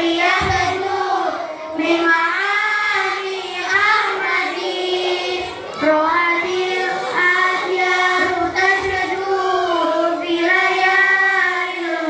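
A girl singing a sholawat, an Islamic devotional song praising the Prophet Muhammad, into a microphone, in long held notes with ornamented turns.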